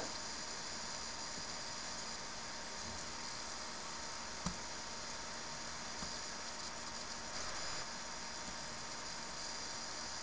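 Steady low background hiss of the recording's noise floor, with one faint click about four and a half seconds in.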